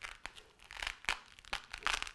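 A saddle disc's mushroom-head fastener pressed and twisted onto fresh loop Velcro on a saddle panel, crackling and rasping in several short spells as the new loop grips.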